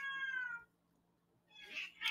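A long, high-pitched cat meow that falls away and ends about half a second in, followed near the end by the start of a spoken word.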